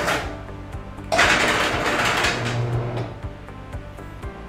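Electric motor of a roll-down hurricane shutter, worked by remote, running in short bursts: one stops just as the sound begins, and another runs for about two seconds from about a second in, with a low hum under it. Background music with a steady beat plays throughout.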